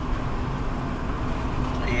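Steady low rumble of a car's tyres and engine heard from inside the cabin while driving at about 40 km/h, with a faint steady hum.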